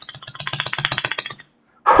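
Alcohol dispenser being worked rapidly by hand: a fast run of clicks and rattles that stops suddenly about a second and a half in. The pump is failing to deliver any alcohol.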